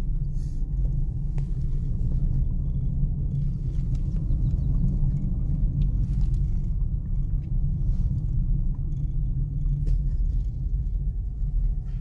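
Steady low rumble of road and engine noise inside the cabin of a moving Toyota Corolla.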